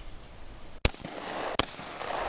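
Two shotgun shots at clay targets, sharp reports about three-quarters of a second apart.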